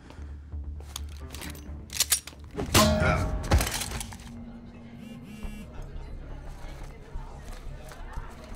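Film soundtrack: a low, steady, tense music bed, broken about two to three seconds in by a few sharp clicks and then one loud sudden crash-like hit.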